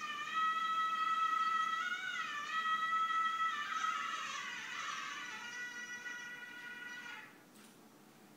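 Electronic keyboard playing a single melodic line. A high held note bends up and back down about two seconds in, then slides down through several notes and fades out about seven seconds in. The bends are gamaka-style ornaments of a South Indian film melody, imitated on the keyboard.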